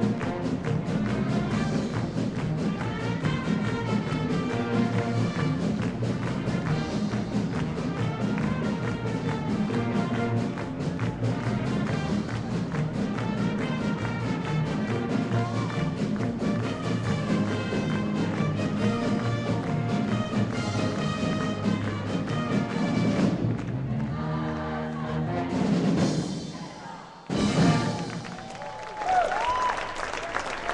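Live pep band of brass, sousaphone and keyboard playing a polka. Near the end the music stops and the crowd breaks into cheering and applause.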